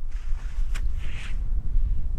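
Wind buffeting the microphone, a steady low rumble, with a soft rustling hiss in the first second and a half.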